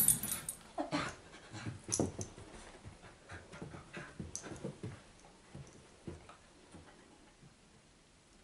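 Two puppies, one a labradoodle, play-fighting, with a run of brief puppy vocal sounds that come less often and fade away near the end.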